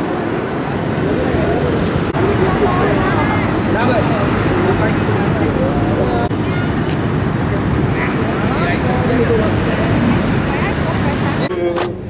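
Steady city traffic noise from a busy road junction, with voices talking faintly over it.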